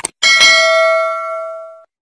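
Subscribe-button sound effect: a quick mouse click, then a bell ding with several ringing tones that fades over about a second and a half and cuts off abruptly.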